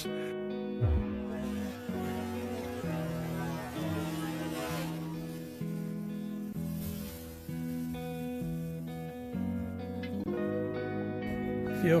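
Soft instrumental background music with plucked, guitar-like notes, and a brief thump about a second in.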